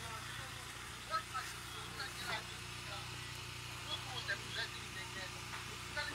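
Faint, scattered snatches of talk over a steady low hum.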